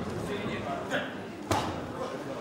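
A boxing punch lands with one sharp smack about one and a half seconds in, against a steady background of spectators' voices and shouts.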